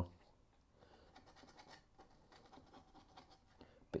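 Faint, dry scratching of a paintbrush working oil paint onto a painting board, its bristles rolled and dabbed across the surface in a run of light scrapes.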